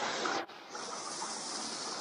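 Small woodland stream running over rocks: a steady rush of water, broken by a brief dropout about half a second in, after which it resumes a little quieter.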